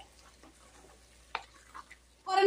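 Wooden spatula stirring a thick curry in a metal karahi: faint scraping, with a sharp tap of the spatula against the pan a little past halfway and a lighter one near the end.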